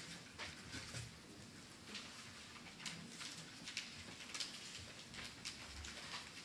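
Faint, irregular light taps, shuffles and paper rustles in a quiet council chamber, the small noises of councillors moving about and handling ballot papers during a vote.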